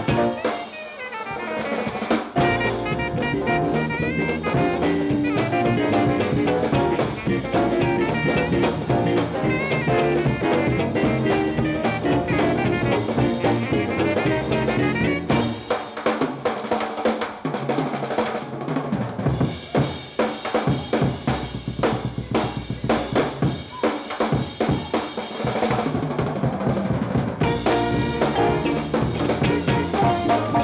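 Live instrumental blues band with electric guitars, bass, trumpet and tenor saxophone over a drum kit, the drums pushed to the front. About halfway through, the horns and guitars drop out for drum breaks of rapid snare and cymbal strokes, and the full band comes back in near the end.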